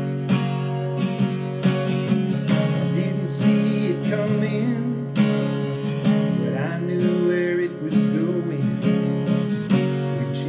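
Acoustic guitar strummed steadily through chords in a country rhythm.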